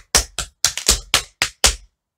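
Metal tap-shoe taps striking a wooden tap board in running shuffles (step, shuffle, step, repeated side to side), a quick uneven run of about a dozen sharp clicks that stops just before the end.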